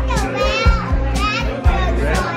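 A young child talking over background music with a steady beat.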